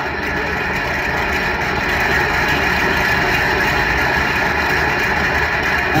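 Steady road and engine noise heard inside a truck's cab at highway speed: an even low rumble under a tyre-and-wind hiss, with no breaks.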